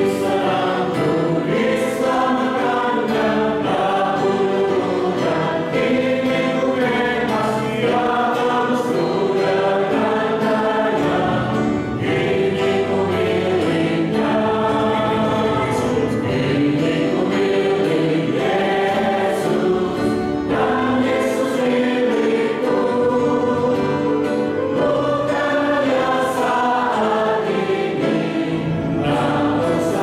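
Church congregation singing an Indonesian hymn together, many voices holding long sustained notes in a slow, steady flow.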